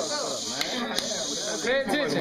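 Indistinct talk and chatter from several people crowded in a room, with a steady high hiss over it and a couple of faint clicks.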